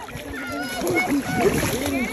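Shallow sea water splashing and sloshing around people wading in it, with excited voices over the splashing.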